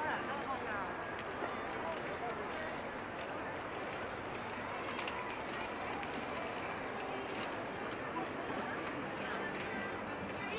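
Busy city street ambience: many passers-by talking at once, with footsteps, at an even level.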